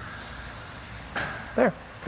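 Tiny battery-powered electric motor of a self-propelled HO-scale model car, a steady faint whir, running as the car is set to follow its guide wire. A short rustle about a second in.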